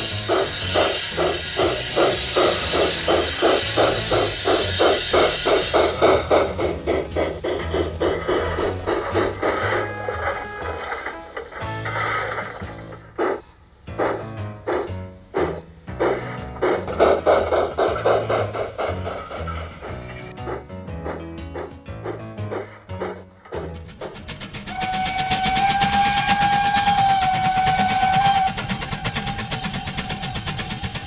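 Background music, with the rhythmic chuffing of a model steam locomotive's digital sound decoder at about four beats a second for the first few seconds and again around the middle. A long held tone comes near the end.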